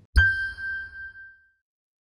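Sony logo sound: a single bright chime struck over a low thump, ringing out and fading away within about a second and a half.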